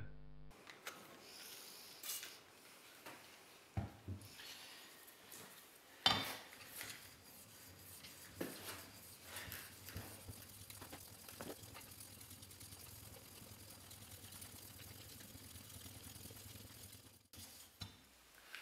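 Metal block plane body rubbed back and forth on a diamond sharpening plate, a gritty scraping broken by several sharp knocks as the plane is set down and shifted, the loudest about six seconds in, then a steadier run of strokes near the end. The face is being lapped flat on the diamond plate.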